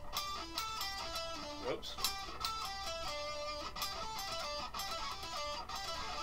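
Electric guitar playing a quick run of single alternate-picked notes, each note sounding separately with a crisp pick attack, in an exercise moving back and forth between the 12th and 14th frets.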